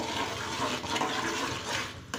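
A metal spoon stirring a thick, simmering liquid in a metal pot, making a steady wet swishing with no sharp clinks.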